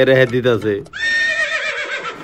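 A man's voice finishes a phrase, then about a second in a horse whinny sound effect plays for about a second.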